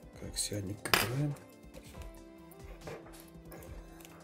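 One sharp, hard clink about a second in as the opened smartphone and its small parts are handled, over soft background music.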